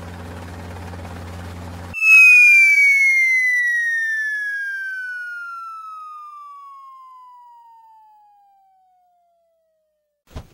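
A low steady hum, then about two seconds in a loud cartoon falling whistle: one long whistle tone that slides steadily down in pitch and fades away over about seven seconds.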